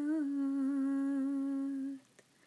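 A solo voice humming one long, steady note in a ghazal, unaccompanied; the pitch dips slightly at the start, then holds level until it stops near the end.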